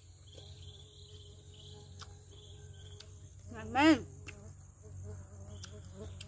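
Insects trilling steadily, a continuous high buzz with a softer pulsing chirp that comes and goes. A little under four seconds in, a person makes one short voiced sound that rises and falls, the loudest thing heard.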